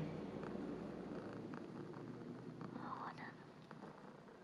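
Domestic cat purring softly while being scratched under the chin.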